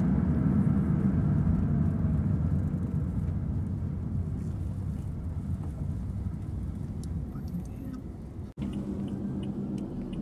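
Road and engine rumble heard from inside a moving car: a steady low drone that slowly eases off. It cuts out for an instant near the end and comes back as a steadier low hum.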